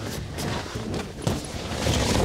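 Inflatable vinyl bounce house rustling and scraping as a person crawls in and tumbles onto its air-filled floor, with irregular soft thumps.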